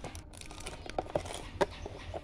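A few light clicks and taps of hard plastic, with a little wrapper crinkle, as a candy packet and a small plastic toy camera are put into a plastic tub. The clicks come about a second in and again past the middle.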